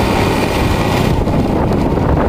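Wind buffeting the microphone of a moving phone: a loud, steady low rumble, with a higher hiss that fades about a second in.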